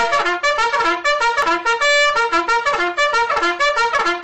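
Alarm ringtone: a brassy trumpet melody played as a quick, continuous run of short notes.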